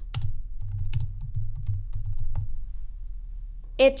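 Typing on a computer keyboard: a quick run of keystrokes for about two and a half seconds, then it stops.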